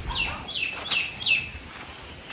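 A bird calling four times in quick succession, each a short note sliding down in pitch.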